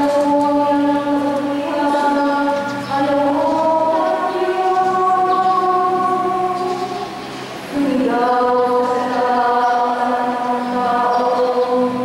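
A woman's voice singing slow liturgical chant through a microphone, holding each note for a second or more and stepping between pitches, with one short breath about two-thirds of the way through.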